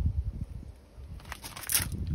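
Low rumble on the microphone, then a short burst of crackling about a second and a half in.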